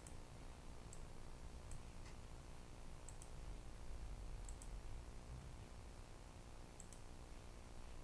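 Faint, sparse clicks of a computer mouse, some in quick pairs, spaced irregularly about a second or more apart over a low steady hum.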